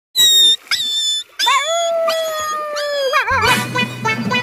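A dog whining and howling: two short high-pitched whines, then one long howl that falls slightly and wavers at the end. A low steady hum comes in near the end.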